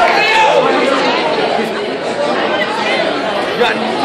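Crowd of onlookers talking and shouting over one another, a dense mix of voices with no single clear speaker.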